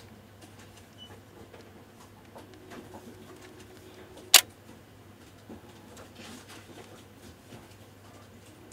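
Canon EOS 70D's shutter and mirror firing once with a single sharp clack about four seconds in, among faint clicks of its buttons being pressed.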